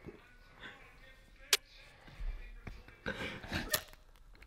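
A quiet room: a single sharp click about one and a half seconds in, then about a second of breathy, voice-like sounds near the end with another short click.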